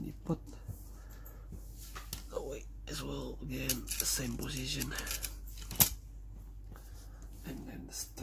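Small plastic and metal parts of a Mini 4WD model car being handled and fitted by hand, with scattered light clicks and a single sharp click a little before the six-second mark. An indistinct man's voice is heard in the middle.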